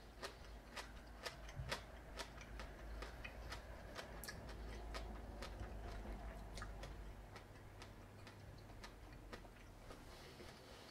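Faint wet clicks of a mouth chewing a kumquat, rind and all, about two a second and not quite evenly spaced.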